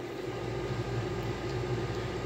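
Steady low hum with a faint hiss of background noise, swelling slightly a moment in.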